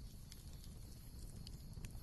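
Faint background ambience in a gap without narration: a low rumble with scattered soft clicks.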